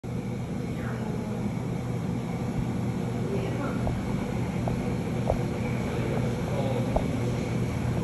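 Helicopter hovering overhead with an aerial saw (a vertical boom of circular saw blades) slung beneath it on a long line: a steady low drone.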